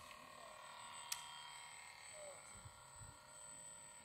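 Near silence: a faint steady background with distant voices and one sharp click about a second in.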